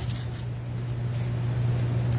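A steady low hum fills a pause in speech, with a few faint brief ticks near the start.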